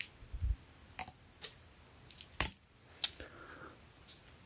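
Handling noises from a small retractable tape measure and the keyring on its case as the tape is lifted off a T-shirt and held up to be read: a handful of short, sharp clicks and taps, the loudest about two and a half seconds in, with a soft thump near the start and light rustling.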